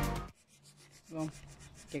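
Background music cuts off just after the start. Then faint, quick scratchy strokes follow, typical of a paintbrush laying primer onto the truck's metal bumper, with a short vocal sound about a second in.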